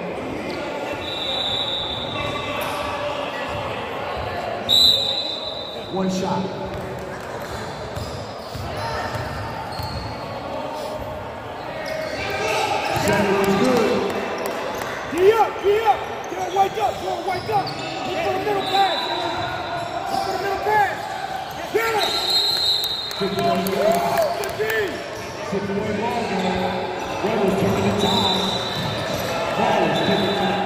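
Basketball being dribbled and bounced on a hardwood gym floor, with sneakers squeaking and players and spectators calling out, all echoing in a large hall.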